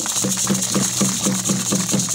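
Traditional hand percussion: drums struck in a fast, even beat of about four strokes a second over a continuous hiss of shaken rattles.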